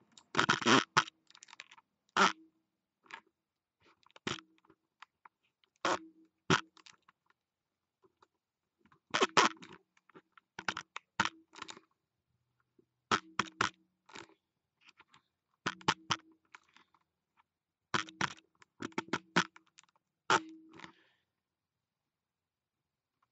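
Irregular clusters of sharp knocks and scrapes close to the microphone, a burst every second or two with short gaps between.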